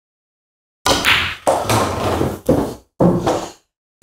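A pool draw shot on a Diamond table: the cue tip striking the cue ball, the clack of cue ball on eight ball, then the eight ball dropping into a pocket and rolling through the table's ball return. The knocks start suddenly about a second in and run in three bursts, ending about half a second before the end.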